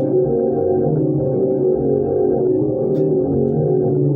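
Warr guitar played through effects in a free improvisation: dense, overlapping sustained notes in the low and middle register, with no steady beat. There is a small click about three seconds in.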